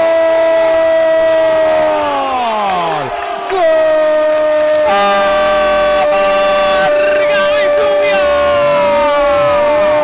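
Radio football commentator's drawn-out goal cry, a loud 'gooool' held on one high note. It falls away about two seconds in, then after a breath a second, longer held cry sustains on one pitch and drops at the end.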